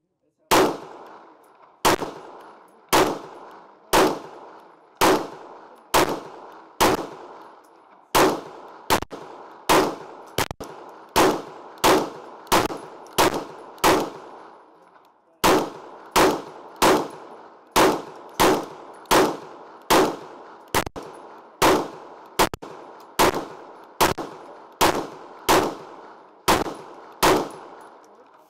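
KRISS Vector 9mm carbine fired semi-automatically, some forty single shots, starting at about one a second and quickening to about two a second, with a short pause a little past halfway. Each shot echoes briefly under the covered firing line.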